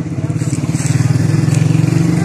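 Motorcycle engine running close by, a fast, even beat that grows louder about a second in.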